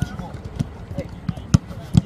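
Footballs being kicked and passed on a grass pitch: a string of dull thumps, the loudest about one and a half seconds in and another just before the end, with players' voices in the background.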